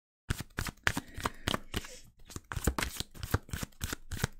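Tarot cards being shuffled by hand: a quick run of papery clicks and flicks that starts suddenly after a moment of dead silence.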